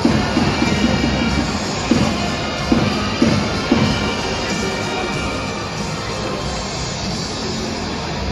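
Ballpark PA music playing through the stadium speakers during the starting-battery announcement, with a few sharp hits in the first four seconds, over a steady wash of crowd noise.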